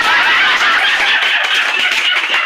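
Several people shrieking and screaming with laughter: loud, high-pitched and unbroken.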